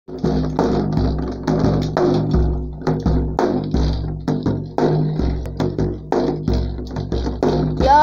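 Hand-played frame drum beating a steady rhythm, deep booming strokes on the skin alternating with lighter, sharper taps.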